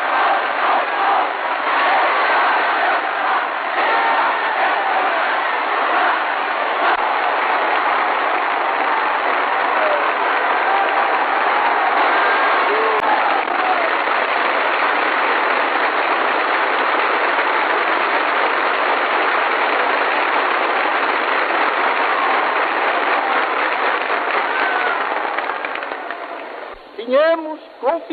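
A large crowd applauding and cheering steadily, with scattered voices calling out through it, heard in a thin, narrow-sounding old recording.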